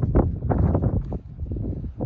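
Wind buffeting the microphone in uneven gusts, a low rumble that surges and drops several times.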